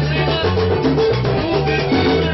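A live vallenato band playing loudly: an accordion holding notes over a moving bass line and steady drum and percussion beats.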